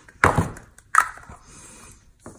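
Two knocks from a glass-mosaic resin coaster being handled on the work table: a duller knock just after the start, then a sharper click with a short ring about a second in.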